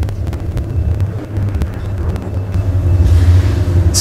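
A steady low rumble with a few faint ticks over it, getting slightly louder near the end.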